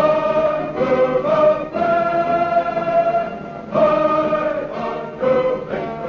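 A choir singing in phrases of held notes, on an old radio transcription recording.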